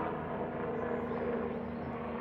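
A distant helicopter droning overhead: a steady, continuous hum with a low rumble beneath it.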